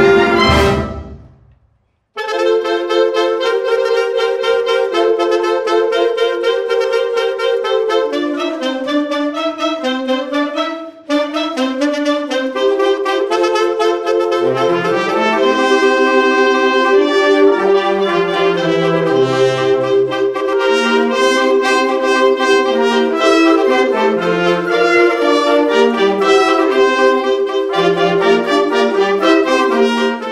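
A school concert band of woodwinds and brass playing. The music stops about a second in and, after a short silence, the band starts again with held chords. It breaks briefly near the middle, and a low brass bass line comes in from about halfway.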